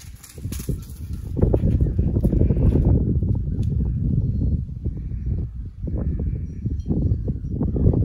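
Wind buffeting the microphone, a gusty low rumble that grows loud about a second and a half in and stays loud.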